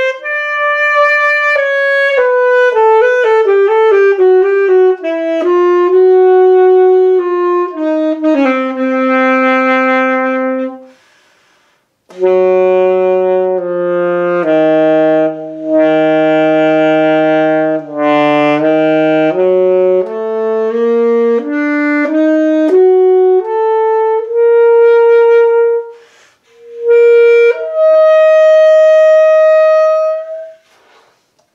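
Alto saxophone playing a slow, unaccompanied melody. A falling phrase settles on a low note; after a short breath, a phrase starts deep in the low register and climbs. After another brief break it ends on a long held note near the end.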